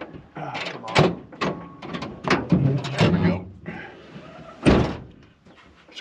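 Old pickup truck's metal tailgate being bumped and pulled to free its sticky latch: a run of knocks and clanks, then one loud bang about three-quarters of the way through as it comes open.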